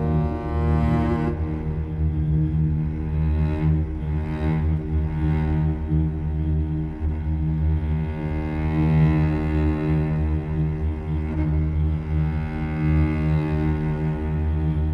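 Sampled cello from the Cello Untamed Kontakt library playing a demo track: layered sustained bowed-cello tones over a steady low bass pulse. It is a simple piece that keeps evolving and building.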